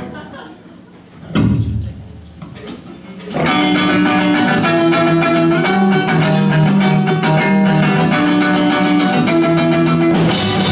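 Electric guitars of a live punk band: after a brief quiet spell broken by a single thump, the guitars come in about three and a half seconds in with ringing, sustained chords that change every second or so.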